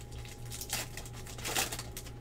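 Foil wrapper of a Prizm basketball card pack crinkling and tearing as it is ripped open by hand, in two short bursts, the second, about a second and a half in, the louder.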